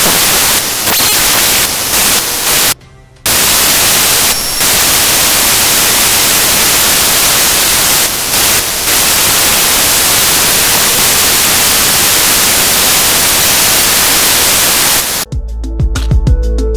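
Loud, steady static hiss with a brief dropout about three seconds in. Near the end it cuts to a short musical jingle marking a commercial break.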